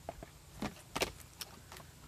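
A few short light clicks and knocks from small packaged items being handled, the sharpest about a second in.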